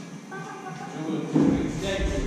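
Indistinct voices echoing in a large gym hall, then from about a second and a half in, heavy low thuds as a diver bounces on a dry-land springboard and takes off.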